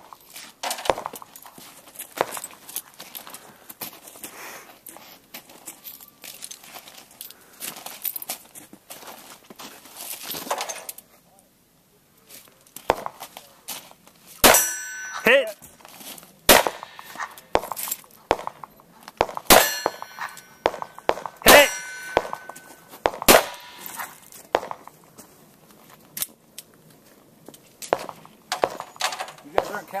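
Handgun shots at steel targets, about five loud cracks roughly two seconds apart in the second half, several of them followed by the ringing clang of a struck steel plate. The first half holds lighter scattered clicks and knocks.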